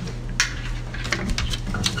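A few light clicks and taps of handling noise, scattered irregularly, over a low steady hum.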